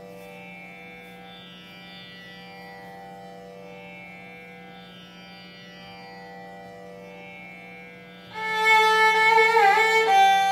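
A steady tanpura drone sounds alone, swelling in a slow repeating cycle. About eight seconds in, a violin enters much louder, playing a Carnatic phrase with a sliding, ornamented note near the end.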